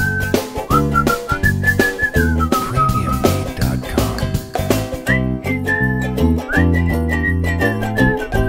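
Music with a whistled melody over a plucked-string accompaniment and steady pulse; the tune pauses for about a second around the middle and then picks up again.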